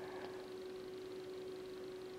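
Quiet room tone: a faint even hiss with one steady electrical hum held throughout.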